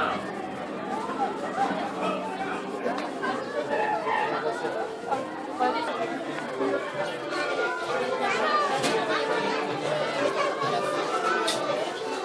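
Crowd chatter: many people talking at once, with no single voice clear enough to make out.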